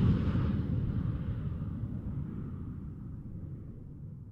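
A low rumble from an intro whoosh-and-boom sound effect, slowly dying away.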